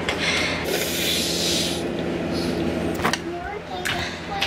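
Aerosol hair product spraying: one hiss of about a second, then a shorter second spray, followed by a couple of clicks near the end.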